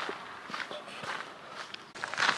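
Quiet footsteps of a person walking, a run of faint irregular steps.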